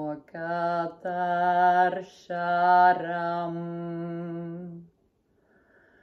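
A woman's voice chanting a mantra on steady, held notes: two short phrases and then one long sustained note that ends about five seconds in.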